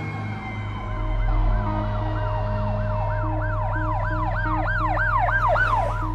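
A siren yelping, rising and falling quickly about three times a second and growing louder until it cuts off at the end. It sits over a low, droning soundtrack with held tones and a softly pulsing note.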